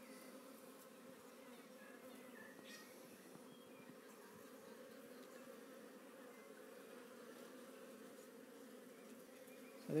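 Honey bees from an opened hive buzzing in a faint, steady hum.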